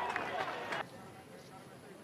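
Faint ballpark crowd noise with distant voices, cut off abruptly a little under a second in, leaving quieter stadium ambience.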